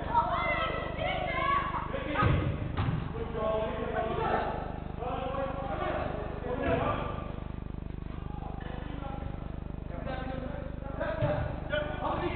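Football players calling out to each other during a game, with four dull thumps of the ball: two close together a couple of seconds in, one near the middle and one near the end.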